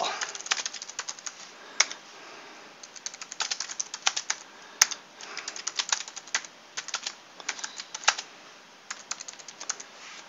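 Typing on a computer keyboard: quick runs of key clicks in bursts with short pauses between them, with one sharper click about halfway through.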